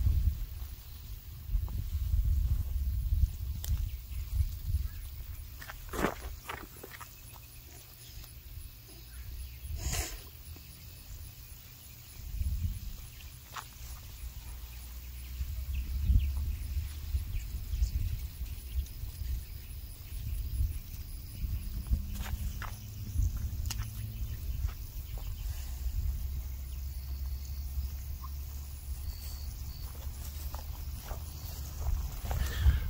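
Outdoor ambience: a low, gusting wind rumble on the microphone, with a few scattered footsteps and rustles through the garden plants.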